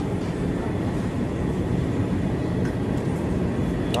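Steady low rumble of supermarket background noise beside an open refrigerated display case, with a faint high steady tone.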